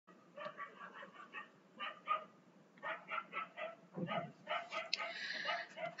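A dog barking faintly in a string of short, repeated barks.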